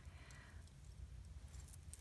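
Near silence: low room hum, with a faint click at the start and a few faint ticks from small metal and bead jewelry pieces being handled.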